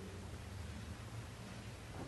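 Quiet room tone: a steady low hum with faint hiss.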